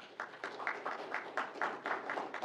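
Audience applauding, many individual hand claps overlapping.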